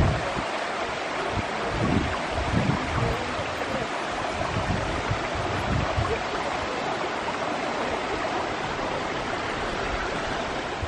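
Steady rush of water from a waterfall and its stream. Irregular low rumbles of wind on the microphone come and go during the first six seconds or so.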